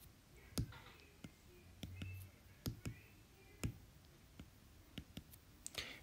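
Faint, irregular clicks of a stylus tapping and writing on a tablet screen.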